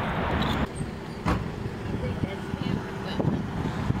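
A car's engine running close by, with wind and handling noise on a handheld camera's microphone and a few light knocks.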